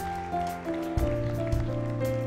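A church congregation applauding over background music of held, sustained chords.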